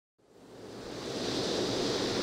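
A hiss of noise fades in from silence and swells steadily louder: the noise-swell intro of a dance-pop song.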